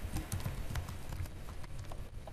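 Computer keyboard typing: a quick run of keystrokes as a word is typed.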